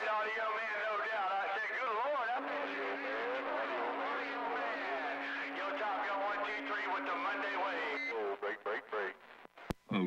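Other stations coming in over a CB radio's speaker: garbled, warbling voices that overlap, with a steady low tone underneath from about two and a half seconds in until about eight seconds. The signal turns choppy near the end and stops with a sharp click.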